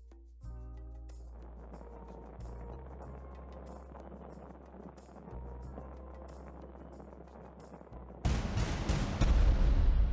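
Background music, then the steady hiss of a small jewellery torch flame heating silver wire for soldering. About eight seconds in, a sudden loud explosion-like boom sounds and rumbles on.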